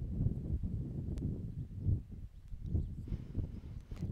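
Low, gusty wind rumble buffeting the microphone outdoors, rising and falling unevenly, with a faint click about a second in.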